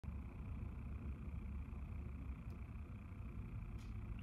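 Quiet room tone: a low, steady rumble with no distinct sound events.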